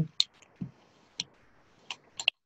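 Three short sharp clicks spread across two seconds, with a softer knock between the first two, over quiet room tone.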